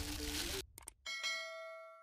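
Subscribe-button sound effect: background music cuts off, a couple of quick mouse clicks follow, then a single notification-bell ding rings out and fades.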